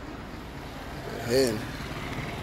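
Steady low rumble of city street traffic, with a short voice sound about a second and a half in.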